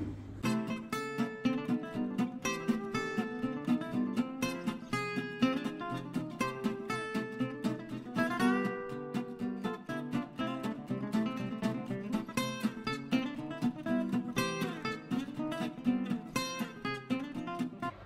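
Background music led by plucked acoustic guitar, notes picked in a quick, steady rhythm.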